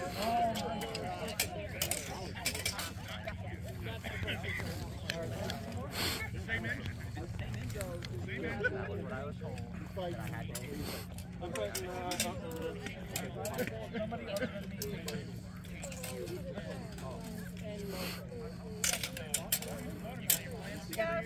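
Onlookers chattering in the background, with scattered sharp clicks of steel rapier blades meeting and beating during a fencing bout, and a laugh a few seconds before the end.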